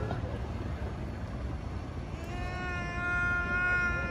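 Steady low rumble of the boat's motor and hull on the water. About two seconds in, a steady, unwavering high-pitched tone starts and is held for about two seconds.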